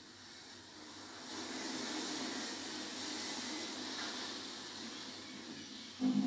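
A wind-like rushing sound effect that swells over the first two seconds and then slowly eases off.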